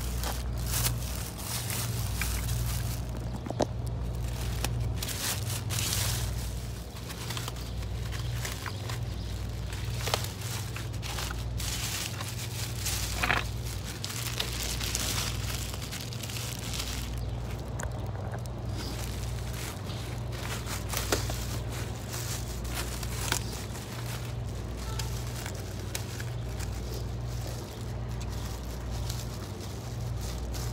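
Plastic wrapping crinkling and rustling as it is handled and pulled off scooter parts, with scattered sharp clicks. A steady low rumble runs underneath.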